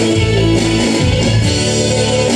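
Karaoke backing track playing an instrumental passage led by strummed guitar, with no vocal over it.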